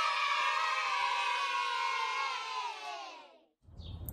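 A crowd of children cheering together in one drawn-out "yay" that sags slightly in pitch and fades out about three and a half seconds in. It plays as a stock sound effect.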